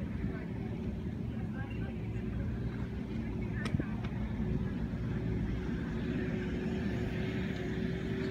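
Steady low outdoor rumble with a faint steady hum and indistinct voices in the background, broken by one sharp click a little under four seconds in.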